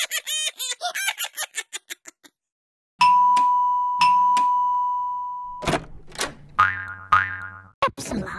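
Cartoon sound effects: a quick run of springy boing sounds over the first two seconds. Then, as a button is pressed, a doorbell-style chime is struck twice a second apart and rings on as one steady tone. Near the end comes a short, falling cartoon squawk.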